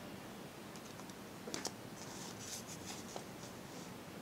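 Faint handling sounds on a drawing sheet. A couple of sharp plastic clicks about one and a half seconds in as a ruler is set down, then a second of short scratchy pen strokes on paper.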